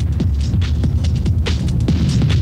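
Early-1990s rave techno from a DJ mix: a deep, steady, throbbing bass drone under quick, repeated percussion hits.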